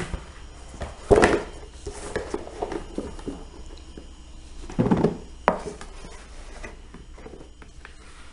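Plastic soap mould being handled and turned upside down onto a tray: a sharp knock about a second in, then a duller thump and a click around the middle, with light handling noise in between.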